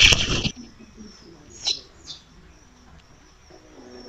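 Small DC motor wired to an audio amplifier as a makeshift speaker, giving a loud burst of crackling noise that stops about half a second in as the leads are connected. Two short, faint high chirps follow.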